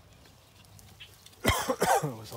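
A man coughing sharply, in two quick bursts, near the end after a quiet stretch.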